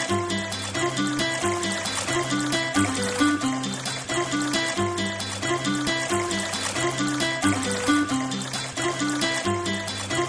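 Instrumental nursery-rhyme music with a steady beat and a repeating bass line, without singing.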